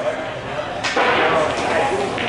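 A pool shot: a sharp click of the cue and balls striking, about a second in, against a background of voices in the hall.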